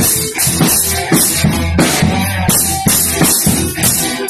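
Yamaha drum kit played in a steady rock beat: bass drum and drum strikes under a constant wash of cymbals.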